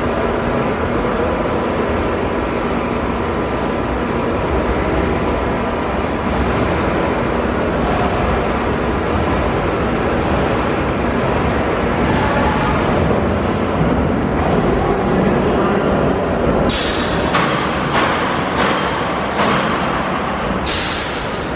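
Arrow Dynamics looping coaster train rolling along its steel track into an enclosed station with a steady rumble. From about three-quarters of the way in come several short, sharp hisses of compressed air from the pneumatic station brakes as the train is stopped.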